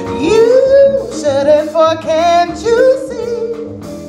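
Woman singing a jazz ballad with a wide vibrato, sliding up in pitch at the start, over a small jazz combo of guitar and bass.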